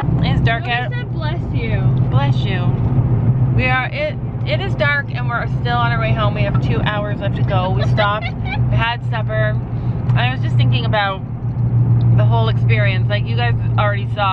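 A woman talking over the steady low rumble of a car cabin on the move.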